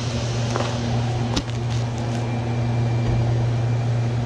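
A steady low machine hum with a few faint level tones above it, and a single sharp click about a second and a half in.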